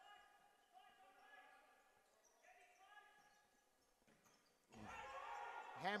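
Faint, echoing sound of a futsal match in an indoor hall: distant voices and a few ball knocks on the hard court. The hall noise grows louder about five seconds in.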